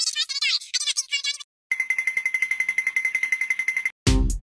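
Two cartoon characters chatter in high-pitched, sped-up gibberish for about a second and a half. After a short gap comes an electronic ringing buzz, like an alarm bell, pulsing about a dozen times a second for about two seconds.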